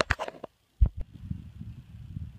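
Handling noise on a hand-held camera's microphone: two low thumps just under a second in, then an uneven low rumble.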